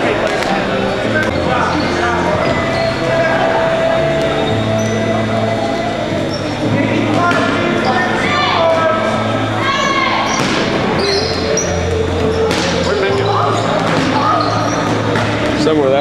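Rubber dodgeballs bouncing and thudding on a hardwood gym floor, repeatedly, amid voices in the hall, with music playing.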